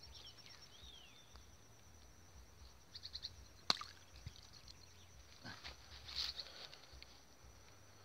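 Quiet outdoor ambience with scattered short bird chirps and a thin steady high tone, broken by one sharp click a little under four seconds in.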